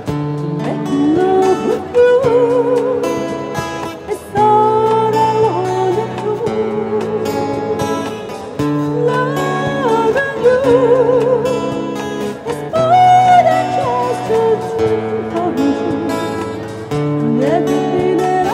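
Live amplified band music: a woman's voice sings long notes with vibrato into a microphone over guitar, bass and drums with cymbals.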